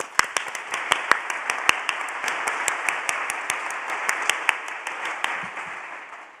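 An audience applauding: a dense patter of many hands clapping that thins out and fades near the end.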